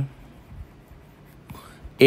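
Faint room tone with a few soft taps of a stylus on a tablet's glass screen as a word is handwritten, two of them near the end.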